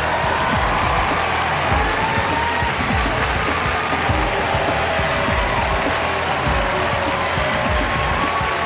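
Audience applauding while walk-on music with a steady beat plays.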